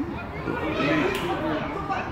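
Football spectators shouting and calling out, several voices overlapping, with one sharp tap about a second in.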